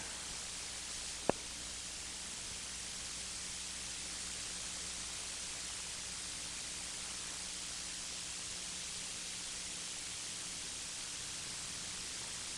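Steady hiss of the recording's background noise with a faint low hum, broken by one short sharp click about a second in.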